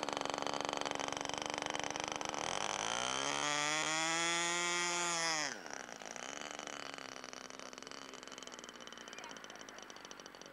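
Small RC model airplane engine buzzing in flight. A few seconds in it grows louder and rises in pitch and holds there, then drops sharply in pitch and loudness about five and a half seconds in as the model biplane comes down on the grass. A quieter, steady engine tone carries on afterwards.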